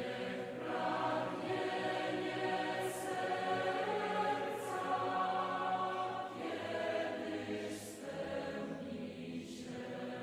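Liturgical singing at Mass: voices singing a slow chant or hymn on long held notes, with a few sharp 's' sounds from the sung words.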